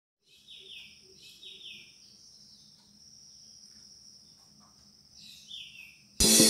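Faint bird chirps: short calls falling in pitch, a few near the start and again near the end, over a steady high insect-like trill.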